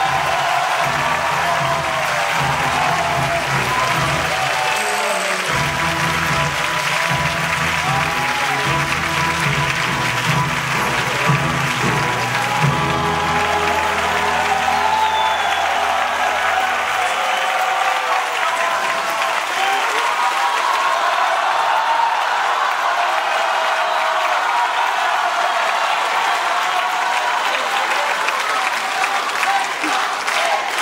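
Audience applauding steadily as the performers bow, over instrumental music from the stage band. The music stops about two-thirds of the way through and the applause carries on alone.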